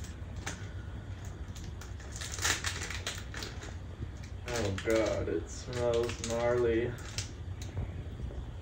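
Foil chip packet being torn and pulled open by hand, in short crinkly crackles that are densest about two seconds in. A person's voice sounds twice in the second half, without clear words.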